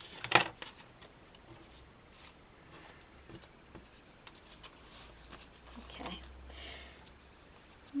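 Paper pieces and craft supplies being handled and shuffled on a tabletop: one sharp knock about a third of a second in, then faint scattered rustles and light taps.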